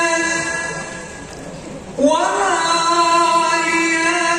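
Sholawat (Islamic devotional song) sung over a large PA sound system: a long held note fades away, then about two seconds in a new phrase comes in suddenly, slides up and is held.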